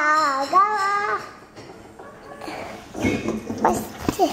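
A young child's high, sing-song voice: drawn-out notes gliding up and down in the first second, then quieter, with a short jumble of louder sound about three seconds in.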